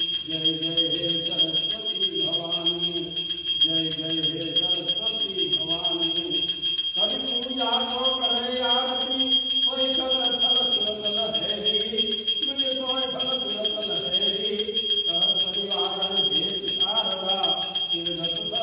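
Puja hand bell rung without pause, a steady high ringing of rapid strokes, under a group of voices singing a devotional aarti in short phrases.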